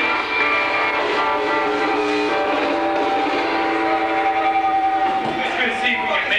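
A sustained electric guitar chord left ringing through an amplifier, heard as a steady cluster of held tones; part of it drops out about two seconds in and the rest ends about five seconds in.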